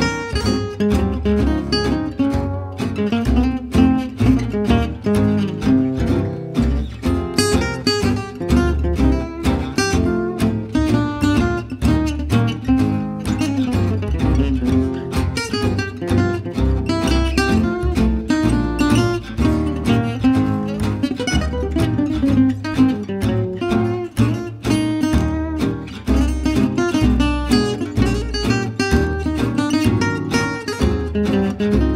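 Gypsy jazz swing played on Selmer-Maccaferri-style acoustic guitars: quick single-note lead lines over strummed rhythm guitar, with a plucked double bass underneath, running without a break.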